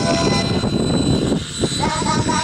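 A radio-controlled model helicopter flying low overhead: its motor and rotors heard as a loud, noisy rush without a steady tone. Music comes back in near the end.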